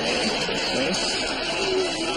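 A jingly Christmas tune playing from a pair of novelty musical light-up socks as they are switched on, with a studio audience laughing over it.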